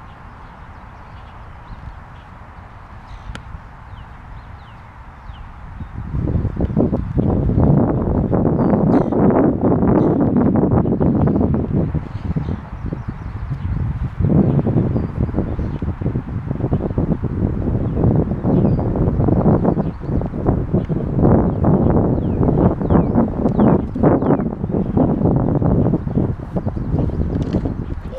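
Wind buffeting the camera's microphone: loud, gusty low noise that sets in about six seconds in and surges irregularly.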